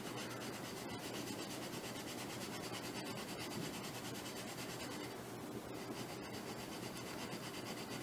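Sandpaper block rubbing back and forth in short strokes on a thin sheet of balsa wood, a quiet, steady scratching. The balsa is being thinned to about 15–20 thousandths of an inch for propeller blades.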